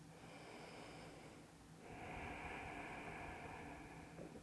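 A woman breathing faintly: a slow breath out lasting about two seconds, starting a little before halfway.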